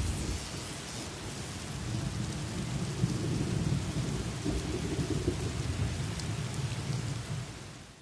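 Thunderstorm sound effect: low rumbling thunder over steady rain, dying away just before the end.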